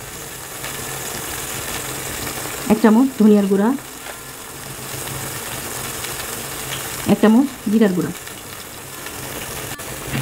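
Masala gravy frying in oil in a cooking pot, a steady sizzling hiss of hard bubbling.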